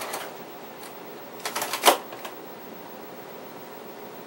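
A Juki TL98Q straight-stitch sewing machine's rapid stitching stops just after the start. About a second and a half in comes a short cluster of clicks with one sharp knock, as the sewn patches are freed from the presser foot and taken off the machine.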